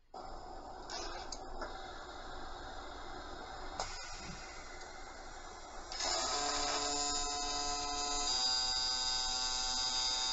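Robotic arc welding cell: low background hiss with a few clicks, then about six seconds in a steady, high buzzing whine of several pitches sets in as the robot welds along the lap joint.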